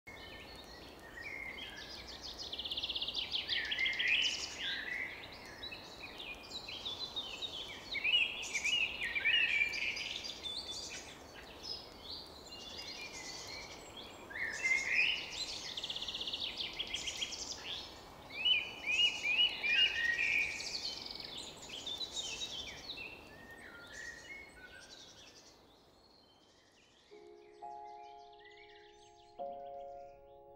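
Several songbirds singing in repeated short phrases over a steady outdoor hiss of ambience. The birdsong thins out near the end as a few soft piano notes begin.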